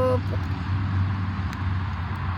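A steady low rumble of background noise. A voice holds a drawn-out note that ends just after the start.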